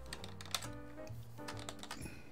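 Computer keyboard keys clicking, a few single presses and then a quick run of clicks near the end, over soft background music.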